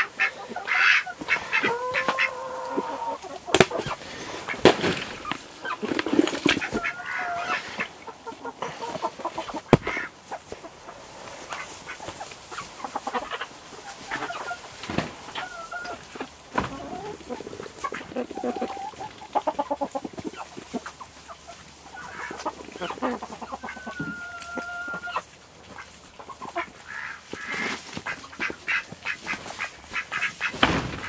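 A flock of chickens and ducks calling close by: hens clucking and squawking, and ducks quacking, with a few longer held calls. Many short knocks and rustles from the birds pecking and moving in the hay run through it.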